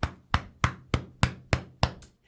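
Seven sharp knocks in a quick, even rhythm, about three a second, from a hand striking something right at the microphone in celebration.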